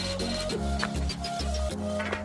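Background music: an electronic tune with a bass line that pulses in short blocks.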